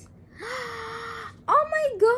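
A woman's breathy, drawn-out exclamation of delight, held on one pitch for about a second, followed by talk near the end.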